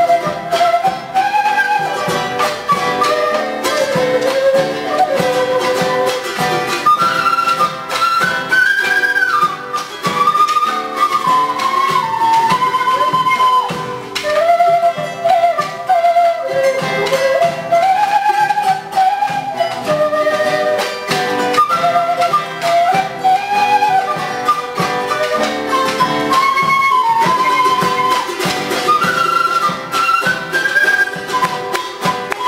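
Live Andean folk music: a quena, an end-blown cane flute, plays a flowing melody with vibrato over strummed charango and guitar and a drum.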